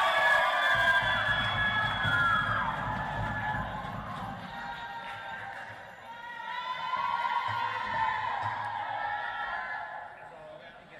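High-pitched shouting and cheering from many voices in an ice-hockey arena, breaking out suddenly and swelling again about two-thirds of the way through, with music underneath.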